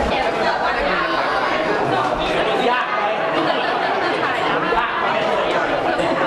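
Crowd chatter in a room: many people talking at once, overlapping voices with no single speaker standing out.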